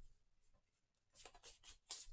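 Pokémon trading cards sliding and scraping against each other as a stack is split and rearranged in the hands: about five short, faint scrapes in the second half, after a near-silent start.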